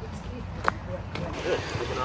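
Faint footsteps on a dirt forest trail, a few scattered ticks, over a low steady rumble.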